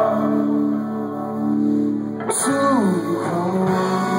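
A live band's electric guitars and bass holding chords. About halfway through, a cymbal crash, then a note slides down in pitch before the chords settle again.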